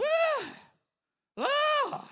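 A man's voice mimicking a woman's whining complaint in two drawn-out wailing syllables, "wha" then "la", each rising and then falling in pitch, with a short pause between them.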